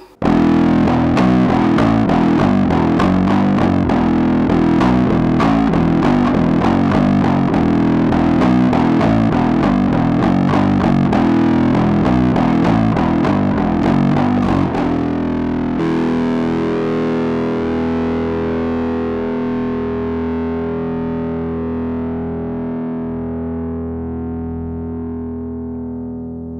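Five-string Spector Euro 5LE bass guitar played through a GoliathFX IceDrive bass overdrive pedal: a fast distorted riff of rapid notes for about fifteen seconds, then a final held note left ringing and slowly fading.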